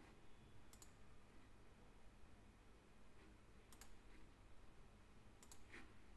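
Faint computer mouse clicks over near-silent room tone: three quick double clicks, about a second in, near the middle and near the end.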